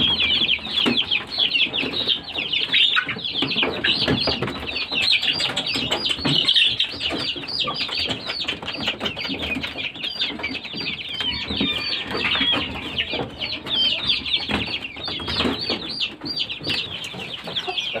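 A flock of young chickens peeping without pause, many short high calls overlapping one another, with a few lower clucks now and then.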